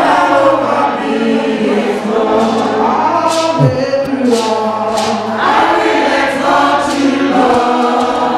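Church choir and congregation singing a gospel hymn together, many voices on long held notes.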